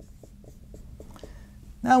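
Marker writing capital letters on a whiteboard: a quick run of short stroke ticks, about four a second, that stops about a second and a half in.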